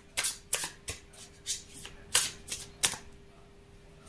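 A tarot deck being shuffled by hand: an irregular run of sharp card snaps and flicks that stops about three seconds in.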